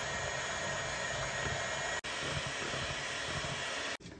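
Black+Decker electric hand mixer running at a steady speed, its beaters whisking cake batter in a glass bowl: a constant motor whine, broken for an instant about halfway through.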